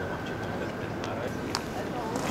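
Outdoor street ambience with indistinct voices of passers-by, and a thin, steady high tone that rises slightly and fades out a little past halfway. A single sharp click follows shortly after.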